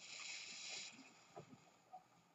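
Faint hiss lasting just under a second as water wets white anhydrous copper sulfate powder, which turns blue as it takes the water back up to form the pentahydrate. A couple of soft ticks follow.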